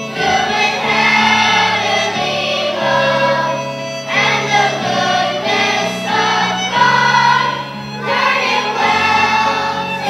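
Large children's choir singing with instruments accompanying, in long held phrases over a steady bass line. It takes short breaths about four seconds in and again near eight.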